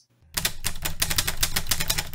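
Intro sound effect: a fast, even run of sharp mechanical clicks, starting a moment after a brief silence.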